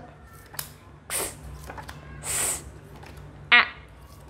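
A woman voicing isolated phonics letter sounds for flashcards: two short hissing sounds, about a second in and again past two seconds, then a brief clipped voiced sound near the end.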